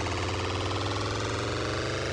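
A sustained electronic drone from an intro sound effect, holding at a steady level with a low hum underneath while its many tones slowly sink in pitch; it is the ringing tail of a loud hit.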